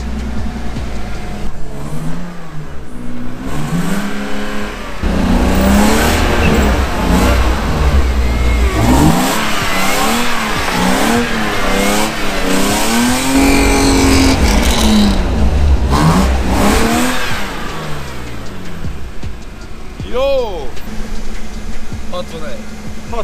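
BMW 325i's engine revving up and down over and over as the car is thrown into a drift on snow, then settling lower for the last few seconds.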